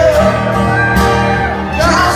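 A live rock performance: a male lead vocalist singing a held, sliding melody over strummed acoustic guitar with the band.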